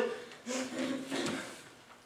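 Faint wordless voice sounds that start about half a second in and fade away before the end.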